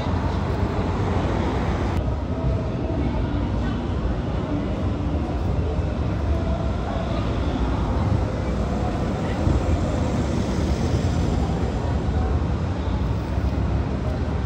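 Busy city street: a steady low rumble of passing car traffic, with people's voices talking close by.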